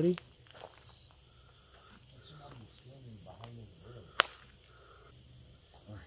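A steady high-pitched insect trill at night, with faint footsteps and low, quiet voices underneath. A single sharp click about four seconds in is the loudest sound.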